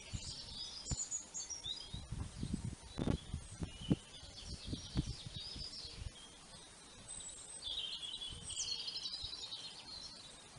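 Small birds singing and chirping outdoors, a mix of quick high twittering phrases, with scattered low thumps mostly in the first half.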